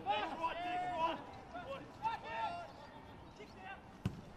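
Faint, indistinct voices talking and calling, much quieter than the match commentary.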